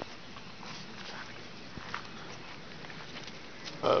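Faint footsteps and rustling through grass and dry fallen leaves, with a few soft crackles, followed by a short spoken "hop" near the end.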